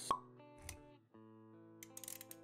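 Motion-graphics intro sound effects over held musical notes. A sharp plop comes just after the start, a soft low thump follows about two-thirds of a second in, and a run of quick clicks begins near the end.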